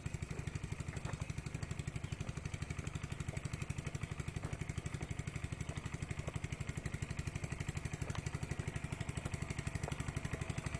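A small engine running steadily out of sight, with a rapid, even chugging beat that does not change.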